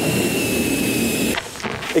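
Helium gas hissing from a tank's nozzle into a balloon being filled: a steady rushing hiss with a thin whistle on top, cutting off about a second and a half in.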